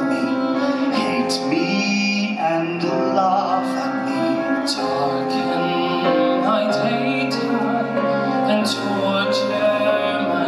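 A man singing a slow musical-theatre ballad into a microphone, holding long notes, over instrumental accompaniment through the theatre's sound system.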